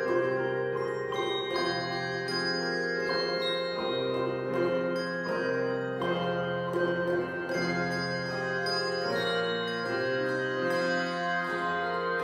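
A handbell choir playing a piece: many bells struck together in chords, each note ringing on and overlapping the next.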